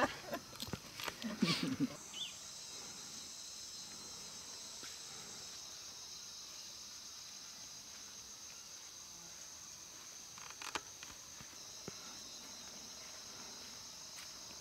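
Steady, high-pitched drone of insects, with a few brief snatches of voices in the first two seconds.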